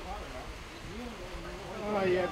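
Faint, distant shouts of footballers calling to one another across the pitch, over a low rumble.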